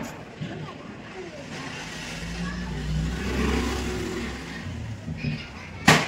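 A motor vehicle passing close by: its engine sound swells to a peak and fades away. Just before the end there is a single sharp bang.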